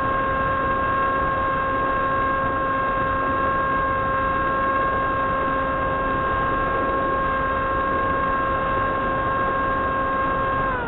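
Electric motor and propeller of an FPV foam plane heard through its onboard camera: a steady whine at constant cruise throttle over rushing wind noise.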